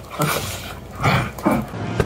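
A small dog making short, rough play-fighting vocalizations while play-biting, in about three bursts.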